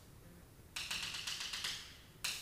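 Chalk tapping on a chalkboard in a quick run of about eight short strokes, starting under a second in and lasting about a second: a dashed bond line being drawn.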